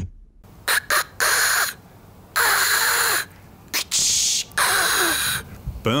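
A man imitating a skateboard crooked grind with his mouth: a few sharp clicks for the pop and landing, then several long hissing, scraping bursts for the grind along the curb.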